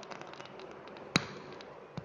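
Quiet room noise with scattered faint ticks and one sharp click a little past a second in, followed by a smaller click at the very end.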